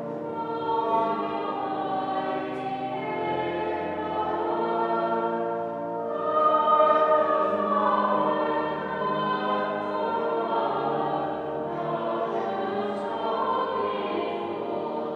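A choir singing in several parts, with long held notes; it swells loudest about halfway through.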